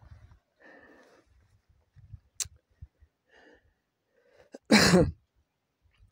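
A man coughs once, a short harsh burst near the end, after a few seconds of faint scattered soft noises.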